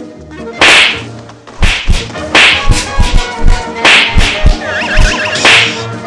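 A percussion break in swing band accompaniment: five loud, sharp whip-like cracks with a quick run of deep drum thumps between them, over quieter sustained band music.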